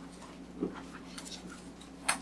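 Faint rustling of paper sheets being handled and leafed through, over a steady low room hum.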